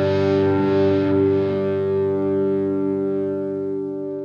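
Rock song ending on a held, distorted electric guitar chord that rings out and slowly dies away.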